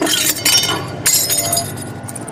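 A drinking glass breaking as it is crushed in a hand: a sharp crack, then shards clinking and tinkling for about a second and a half before dying away.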